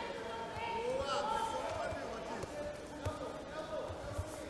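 Tournament arena ambience: voices shouting in a large hall, unintelligible, with a few dull thuds, about one a second or two.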